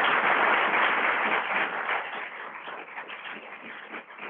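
Audience applauding, loudest over the first two seconds and then thinning out.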